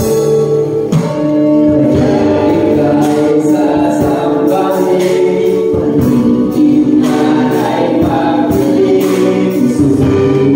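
A live worship band of keyboard, guitars and drums plays a steady praise song while a small group of young singers sings the lyrics in Tagalog, the drums keeping a regular beat.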